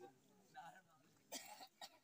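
Near silence in a pause between spoken phrases, with a few faint, short sounds.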